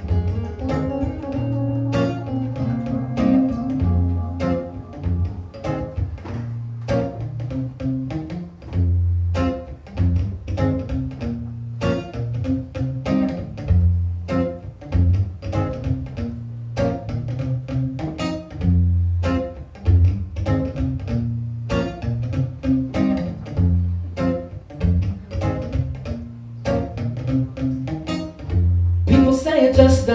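Acoustic guitar played solo: a repeating chord pattern of quick plucked notes, with a low bass note recurring every few seconds. A man's singing voice comes in near the end.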